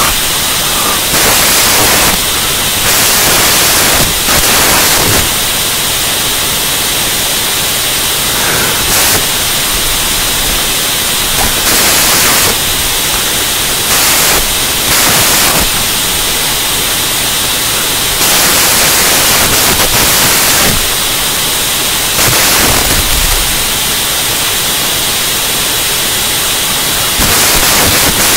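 Loud, steady hiss of electronic static with no speech or music. The hiss grows louder and brighter in irregular stretches, each lasting about a second.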